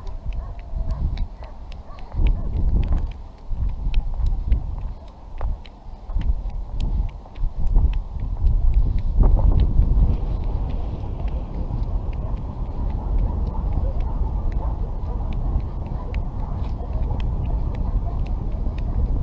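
Wind buffeting the microphone of a head-mounted camera high in the open air: a loud, low, gusty rumble that comes in surges for the first half, then holds steadier, with faint scattered ticks above it.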